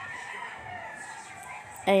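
A faint bird call, one drawn-out call whose pitch slowly falls. A woman's voice cuts in loudly near the end.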